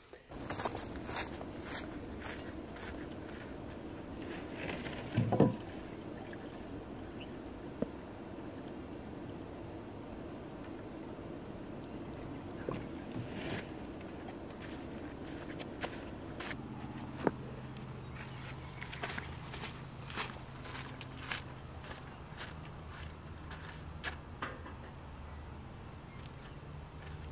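Footsteps and scattered short clicks, knocks and clinks of camp chores, handling a metal pot and a plastic water jug, over a steady background hiss. A low steady hum joins in about two-thirds of the way through.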